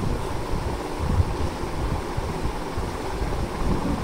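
Low, uneven rumbling noise on the microphone, like wind or air buffeting it, with no clear distinct events.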